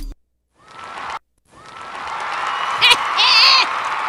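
Hip-hop music cuts off at the start, a second or so of near silence, then applause builds up with high whoops and shouts about three seconds in.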